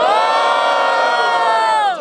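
A man's long, loud whoop: his voice rises into a high held note and drops away near the end, as the crowd cheers for the MC's verses.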